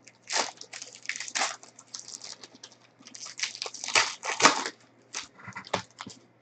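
Foil trading-card pack wrapper crinkling and tearing as it is peeled open by hand, in a run of irregular crackles, loudest about four seconds in.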